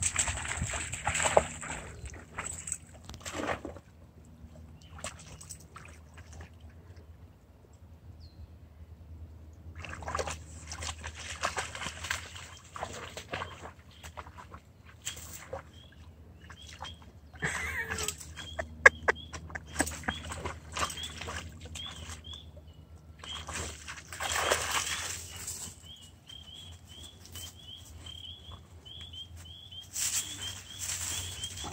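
Dogs wading through shallow marsh water, sloshing and splashing in irregular bursts with quieter stretches between.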